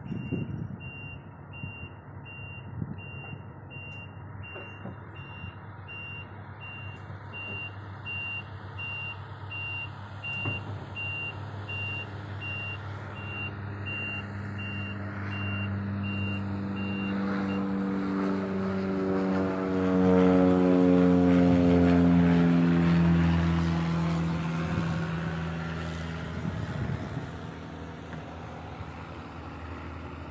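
Heavy diesel machinery running, with a reversing alarm beeping steadily about twice a second that stops a little past halfway. Later the engine grows louder, its pitch slowly sinking, and is loudest about two-thirds of the way in before easing off.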